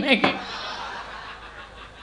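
Laughter from a crowd after a spoken word, dying away over about a second and a half.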